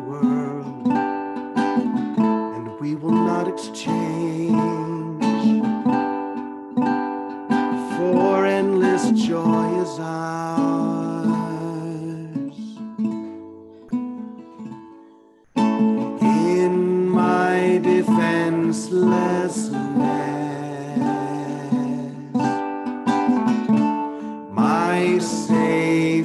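A man singing while strumming a ukulele. The playing dies away about twelve seconds in, stops briefly, and starts again abruptly about three seconds later.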